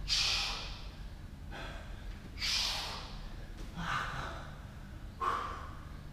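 A man breathing hard from exertion, forcing out a sharp, hissing breath about every second and a half in time with his sit-ups, five times.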